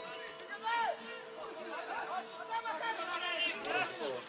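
A mixed flock of sheep and goats bleating, many calls overlapping. A loud call falls in pitch about a second in, and the calls grow thicker toward the end.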